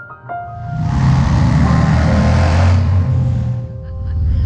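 Harley-Davidson Street Glide's Twin Cam V-twin engine running under power with wind rush. It swells up about half a second in and eases slightly near the end, over soft background piano music.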